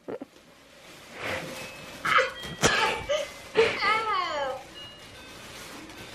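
Rustling and crinkling of a large striped gift wrap as a child tugs at it, with a brief wordless voice a little past the middle.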